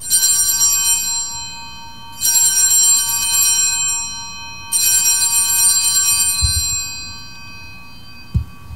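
Altar bell rung three times at the elevation of the chalice, each ring a cluster of high metallic tones that rings on and slowly fades.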